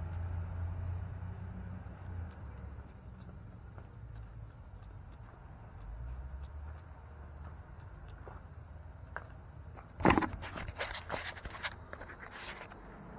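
Handheld camera being picked up and moved: a sudden burst of knocks, clicks and rustling from about ten seconds in, over a faint steady hiss and low rumble.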